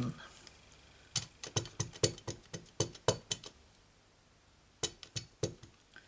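Light clicks and taps of a clear acrylic stamp block being handled on the work surface, a quick run of about ten in two and a half seconds, then a few more near the end.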